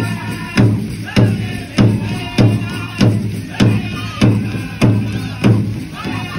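Pow wow big drum struck by a drum group in a steady, even beat, a little under two strikes a second.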